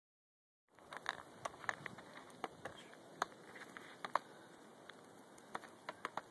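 Wood campfire crackling: irregular sharp snaps and pops of burning wood over a low steady hiss, starting under a second in.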